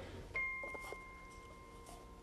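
A single clear ringing note, struck about a third of a second in and fading away over about a second and a half, like a small chime or bell, with a few faint taps just after it.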